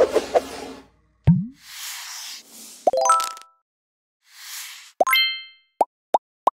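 A string of animated end-screen sound effects: a low falling plop, two soft whooshes, two rising chimes and a quick pop near the end, with silence between them.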